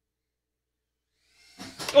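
Complete silence, then a man starts speaking near the end.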